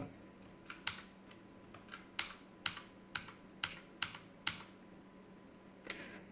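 Computer keyboard keys pressed one at a time, about nine separate faint clicks at roughly half-second intervals over the first four seconds or so, with one more near the end.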